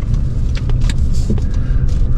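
Car cabin noise while driving slowly: a steady low road and engine rumble, with a few light clicks.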